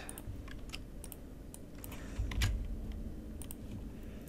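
Irregular clicking from a computer mouse and keyboard, with a low thump about two seconds in.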